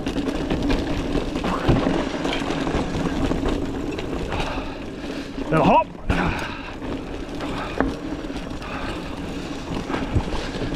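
Hardtail 29er mountain bike running fast down a dry dirt singletrack: continuous tyre rumble and frame rattle, with sharp knocks as the wheels hit ruts and rocks. A short rising sound about halfway through is the loudest moment.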